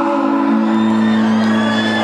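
Live vallenato band music on a concert sound system: a held chord of steady tones, with a low bass note coming in under it partway through.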